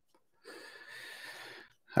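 A person's audible breath, one soft intake lasting about a second.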